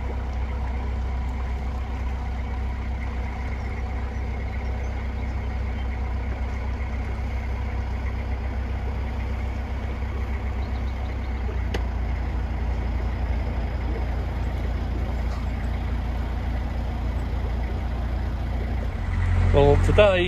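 Narrowboat's diesel engine running steadily, a constant low drone with no change in pace.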